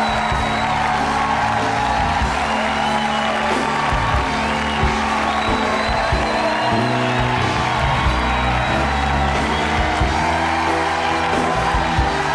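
Live house band playing an upbeat groove, with a moving bass line, drums and percussion, and the studio audience cheering over it.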